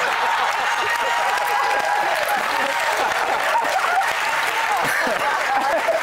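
Studio audience applauding and laughing, a steady crowd wash with several voices laughing over it.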